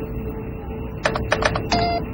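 Sci-fi spaceship bridge sound effects: a steady electronic drone, then about a second in a quick run of about six short computer blips ending in a held electronic beep.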